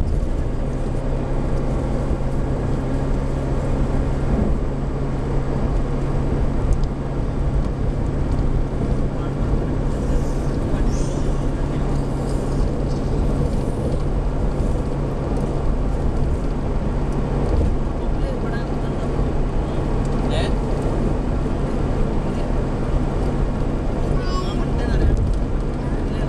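Steady in-car driving noise: an engine hum with tyre and road noise, heard inside the car's cabin while moving along a highway.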